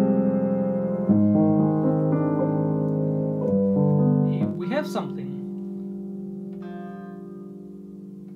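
Grand piano playing sustained chords, changing about a second in and again around three and a half seconds, then a last chord held and left to ring and fade through the second half. A brief voice sound cuts in around the middle.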